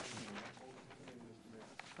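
Faint low voices murmuring over quiet room tone in a large meeting chamber, with a small click near the end.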